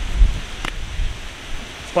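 Wind buffeting the microphone outdoors: uneven low rumble with a rustling hiss, and a single short click about two-thirds of a second in.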